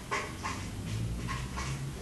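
Felt-tip marker squeaking on flip-chart paper in several short strokes while writing.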